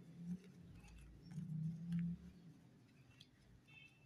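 Faint scraping and clicking of a plastic spoon stirring a thick semolina-and-potato-juice paste in a glass bowl, under a low hum that swells twice.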